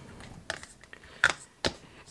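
Plastic lid of a Memento ink pad being fitted and pressed shut onto its case: three short clicks, the loudest a little past halfway.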